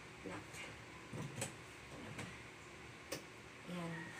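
Wheel lock on the swivel caster of a rolling makeup trolley case being worked by hand: a few short, sharp clicks, the sharpest about three seconds in.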